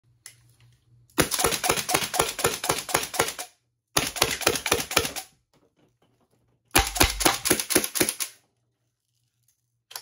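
Homemade full-auto Nerf blaster powered by 100 psi compressed air, its solenoid valve and pneumatic pusher cylinder firing foam darts in three rapid bursts of sharp clicks. The first burst lasts about two seconds and the other two about a second and a half each.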